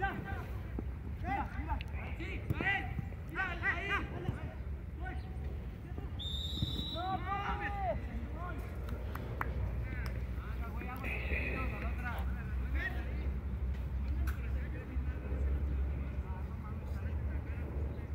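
Players shouting and calling to each other across an open football pitch, heard from a distance, with a steady low rumble underneath and a brief high steady tone about six seconds in.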